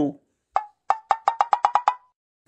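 Wood-block-style cartoon sound effect: a single sharp knock, then a quick run of about nine short pitched knocks that speed up and stop just before the end.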